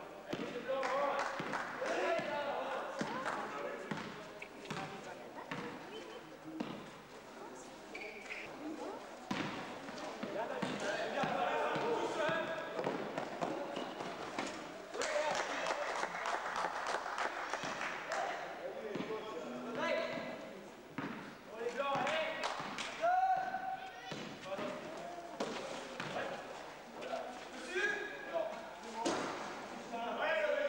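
Basketball game in a large sports hall: a basketball bouncing on the court floor at intervals, amid players' shouts and calls that are never clear enough to make out as words.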